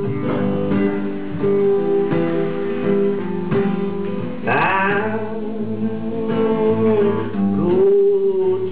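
Acoustic guitar strummed steadily while a man sings, with a held note sliding up into place about halfway through.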